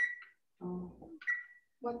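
Short, broken snatches of people's voices over a video call, separated by brief gaps of silence.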